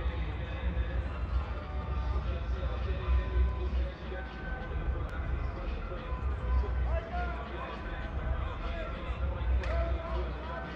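Indistinct voices of players and coaches talking around a large indoor practice field, over a steady low rumble.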